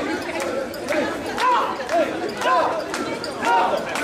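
Mikoshi bearers chanting together in rhythm as they carry the portable shrine, many men's voices calling out about twice a second, with sharp clicks in the mix.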